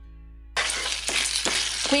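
Soft acoustic guitar music cuts off about half a second in. Spaghetti then sizzles in a frying pan with a little of its cooking water, finishing cooking, while it is stirred and turned with a plastic pasta server that clicks and knocks against the pan.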